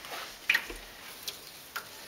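A few short, faint clicks and taps, most clearly about half a second in and again near the end, from hands and water working a wet puppy's coat in a stainless steel sink.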